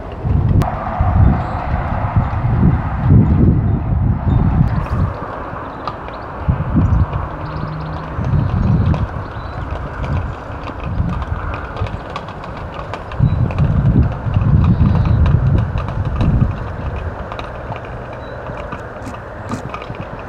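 Gusty wind buffeting the microphone in loud, uneven low rumbles that swell and ease, over a steady rushing sound, with scattered faint light ticks.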